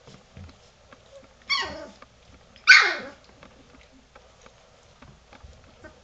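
Three-week-old golden retriever puppy giving two short, high-pitched barks about a second apart, each falling in pitch, the second louder.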